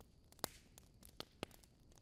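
Near silence: faint room tone with a few brief, faint clicks.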